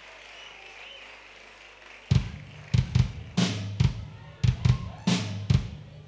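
Quiet stage and room hum, then about two seconds in a kick-and-snare drum beat starts, opening the song, with a low sustained bass note coming in under it soon after.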